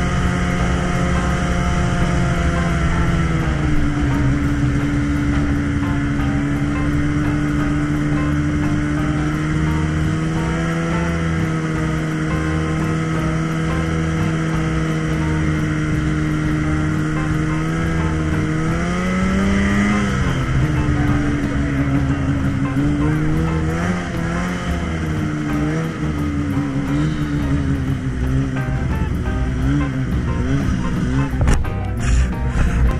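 Arctic Cat ZR 6000 RR snowmobile's two-stroke twin engine running at a steady trail-cruising pace, heard from the seat. Its note dips slightly a few seconds in, holds steady, rises and falls briefly about two-thirds of the way through, then wavers near the end.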